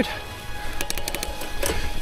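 Background music over the ride, with a quick run of sharp clicks about a second in.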